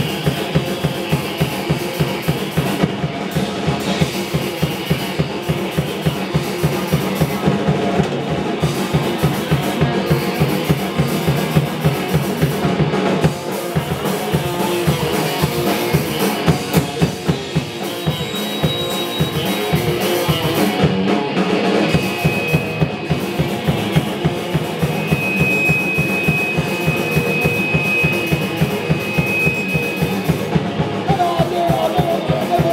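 Hardcore punk band playing live and loud: a fast, driving drum-kit beat with rapid bass-drum strokes under electric guitar and bass. A thin, high steady tone rings through the last third.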